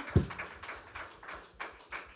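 A single dull thump just after the start, followed by faint scattered taps and low room noise.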